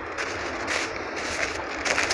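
Footsteps crunching on packed snow, about two steps a second, over a low steady rumble.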